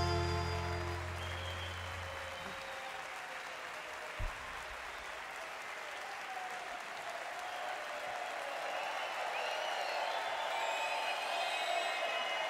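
The band's last chord rings out and fades over the first two seconds. Concert audience applause takes over, with cheers that grow louder toward the end. A single low thump comes about four seconds in.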